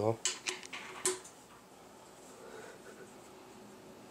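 Four or five light metal clicks in the first second, a hex key knocking against bolt heads and metal washers on a radar mount plate, then only faint room tone.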